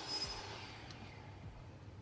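Faint background noise, with a faint high whine fading out in the first half second and a single light click about a second in.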